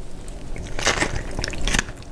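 A person biting and chewing a mouthful of Chicago-style hot dog, with irregular crunches that are loudest about a second in and again near the end.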